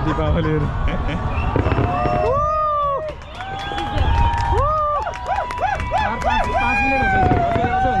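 People talking and exclaiming in Chinese, their voices rising and falling, over the low booms and crackle of a fireworks display.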